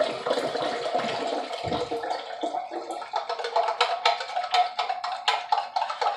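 Cold water pouring from a hand-press pump on a large bottled-water jug into a stainless steel tumbler, with a steady splashing and a run of quick, irregular clicks and knocks in the second half.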